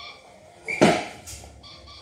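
A man's short grunt of effort a little under a second in, as he strains to lift a heavy dumbbell, with faint steady high-pitched tones behind it.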